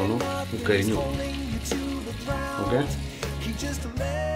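Falafel patties deep-frying in hot oil, sizzling steadily, under background music.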